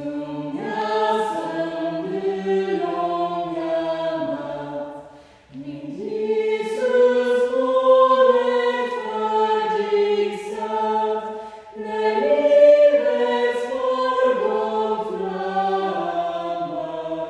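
A small choir of mixed men's and women's voices singing in harmony, in sustained phrases with short breaks about five and a half and twelve seconds in.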